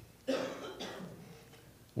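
A man's short cough about a quarter second in, a single rough burst that trails off into fainter throaty catches.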